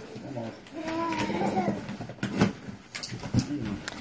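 A drawn-out wordless "ooh" from a person's voice, rising and falling in pitch, as a cardboard box is opened. A couple of short knocks from the box follow.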